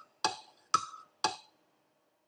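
Three sharp, evenly spaced percussive ticks about half a second apart, each with a short ringing pitch, stopping about a second and a half in.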